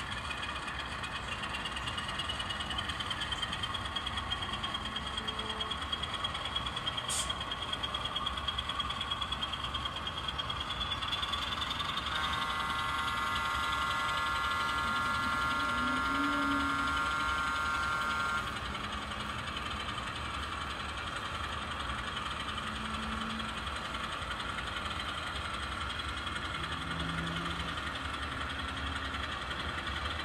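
Sound-equipped N-scale diesel switcher running as it moves, its engine sound playing from a small speaker, with a whine rising slowly in pitch over the first dozen seconds. Its horn is held for about six seconds midway.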